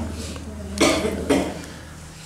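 A person coughing: two short coughs about a second in, the second one shorter.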